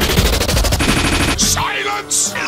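A rapid stuttering rattle of many repeated clicks a second, like a tiny snippet of the song looped over and over. It changes speed about midway and breaks off after about a second and a half into a brief hiss and a short gliding tone.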